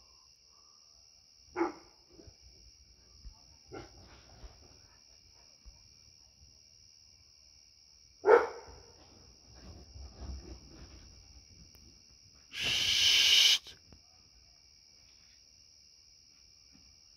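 A Labrador retriever giving single barks about a second and a half, four and eight seconds in, the last one loudest. A steady high drone of night insects runs behind. Near the end a loud rustling burst lasts about a second.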